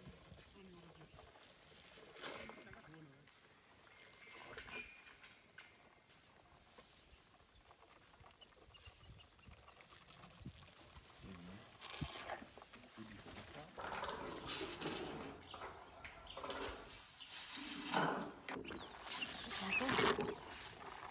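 Elephant calf suckling milk from a bottle: soft, irregular sucking and slurping sounds that grow busier and louder in the last few seconds. A steady high-pitched whine in the background stops about two-thirds of the way in.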